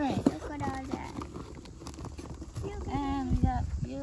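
Short wordless vocal exclamations, with light clicks and knocks from plastic items being handled.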